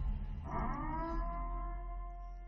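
Electronic sound cue: a held chord of steady synthesized tones, with new notes coming in about half a second in that slide slightly down and then hold.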